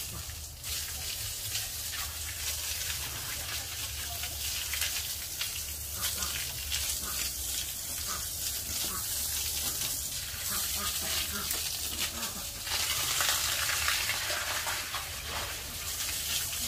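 Water spraying from a hose onto a wet concrete pig-pen floor, a steady hiss that grows louder about three-quarters of the way through.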